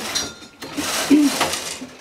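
Carriage of a Silver Reed 840 knitting machine pushed across the metal needle bed to knit a row, a noisy sliding rattle of the needles. A short pass at the start is followed by a longer one lasting about a second.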